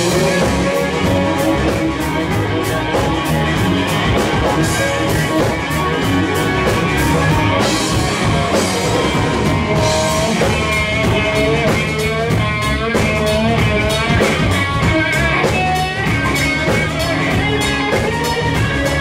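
Live rock band playing an instrumental passage on electric guitars and drum kit, with regular cymbal strokes. From about ten seconds in, a lead electric guitar plays a solo with bent notes.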